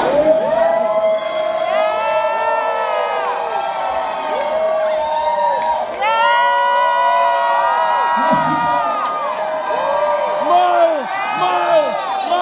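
Pub audience cheering and whooping, many voices overlapping in long rising-and-falling 'woo' calls.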